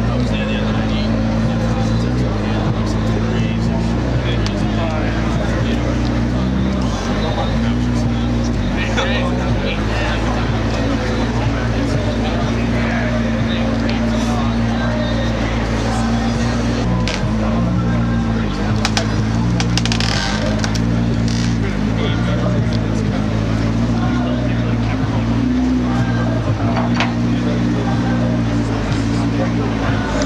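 McLaren P1's twin-turbo V8 idling with a steady low drone that shifts in pitch now and then, under crowd chatter and scattered sharp clicks.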